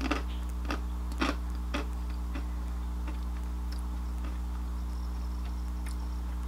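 Someone crunching small ring-shaped habanero potato snacks. There are several sharp crunches in the first two seconds or so, about one every half second, then fainter chewing, over a steady low hum.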